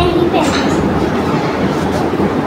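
A loud, steady rushing noise, with brief snatches of children's voices near the start.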